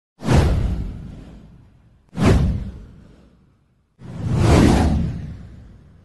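Three whoosh sound effects from an animated title intro, each a swell of noise with a deep low end that fades away. The first two strike sharply about two seconds apart; the third swells in more slowly and fades out near the end.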